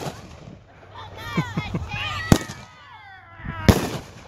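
Consumer aerial firework shells bursting overhead, with two sharp bangs: one a little past halfway and one near the end, about a second and a half apart.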